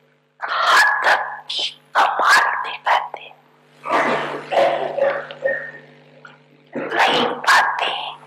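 A woman speaking into a microphone in short phrases with brief pauses, over a steady electrical hum.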